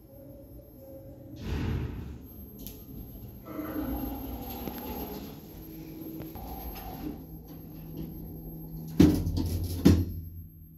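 Passenger lift running with a steady low hum, then two sharp clunks about a second apart near the end as the car stops and its doors open.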